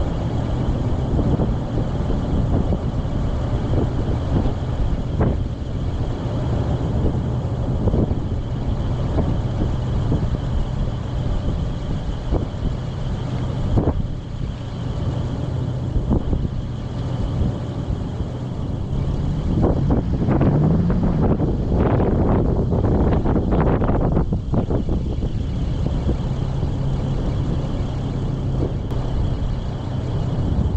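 Toyota Land Cruiser FZJ80's 4.5-litre inline-six idling steadily, heard from inside the cab, with wind noise on the microphone. A run of short knocks and rattles comes about twenty seconds in.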